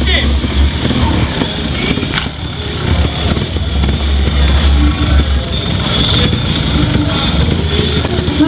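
A TRS trials motorcycle engine running while the rider balances on the bike, mixed with a public-address voice and music. There is a sharp knock about two seconds in.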